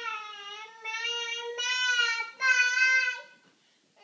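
A toddler's high voice singing or vocalising in about four long held notes with slightly wavering pitch, stopping shortly before the end.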